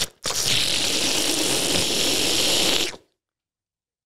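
A steady whooshing, sucking noise lasting nearly three seconds that starts just after a brief gap and cuts off abruptly into dead silence. It is a comic soul-sucking sound.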